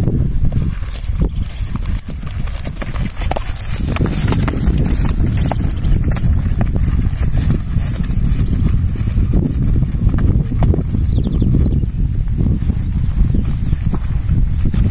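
Hoofbeats of a young Quarter Horse mare cantering under a rider on dirt ground, over a steady low rumble.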